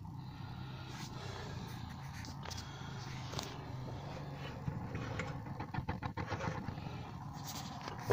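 Portable butane-cartridge gas heater burning just after being relit with its choke, a quiet steady hum with scattered small irregular crackles and clicks.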